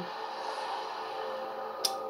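A pause in talk: faint background music or TV sound in the room, with a single sharp click near the end.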